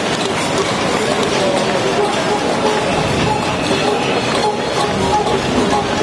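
Crowd of protesters banging pots and pans in a cacerolazo, a dense, continuous clatter with voices mixed in.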